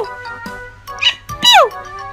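Pomeranian puppy yapping twice, short high yips that drop sharply in pitch, over background music.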